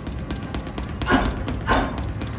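Boxing gloves hitting a heavy punching bag in a quick run of short hits, with two louder bursts about a second in and half a second later.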